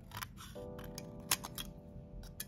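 Scissors cutting through an empty aluminium-foil blister pack: a few short crisp snips, the sharpest about two-thirds of the way in. Soft background music with held tones runs underneath.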